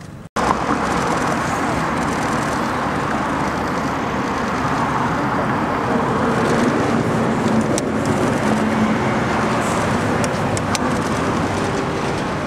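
Steady road traffic noise from passing vehicles on a nearby road, starting suddenly a moment in and running at an even level.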